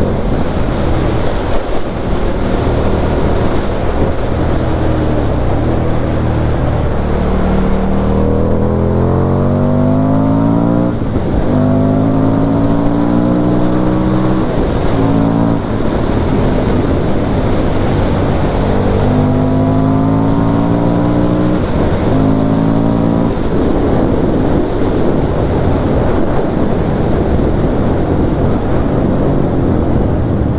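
Indian FTR1200's V-twin engine pulling hard on the road. Twice its pitch climbs steadily and then drops sharply at a gear change. Wind rushes over the microphone throughout.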